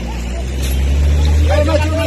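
A vehicle engine running: a low steady rumble that grows louder over the first second, with a man's voice coming in about a second and a half in.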